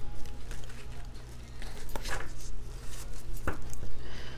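Tarot cards being handled and laid down on a cloth-covered table: a few faint taps and slides over a steady low hum.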